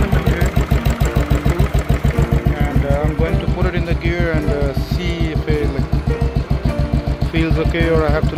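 Royal Enfield Classic 500's single-cylinder four-stroke engine idling with a steady, even beat of low thumps, several a second.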